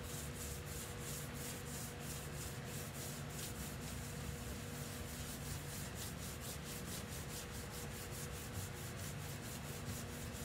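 A sponge scrubbed back and forth over a painted board, rubbing off damp paint in quick repeated strokes, several a second, over a faint steady hum.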